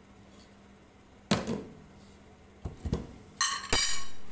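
A glass pan lid with a metal knob handled and set onto a non-stick frying pan: a sharp clack about a second in, a few light knocks near three seconds, then the loudest sound near the end, a ringing clatter as the lid settles on the pan's rim.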